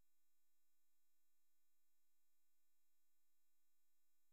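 Near silence, with only a very faint, steady electronic tone underneath.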